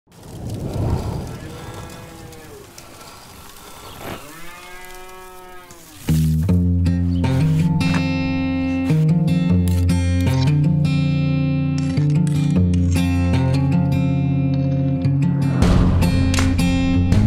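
Cattle mooing, two long calls in the first six seconds. Then acoustic guitar music starts abruptly and plays on with a steady strum.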